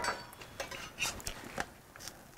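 Metal utensil clicking and scraping lightly against an electric griddle and a grilled cheese sandwich, a few short sharp clicks.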